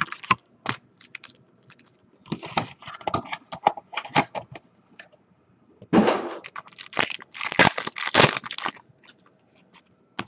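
Trading-card pack wrappers torn open and crinkled by hand, with cards shuffled. The crackling comes in two spells, about two seconds in and again, denser, from about six seconds in.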